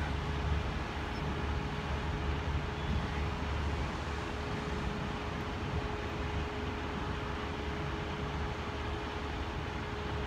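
Steady background rumble of road traffic, with a faint steady hum over it.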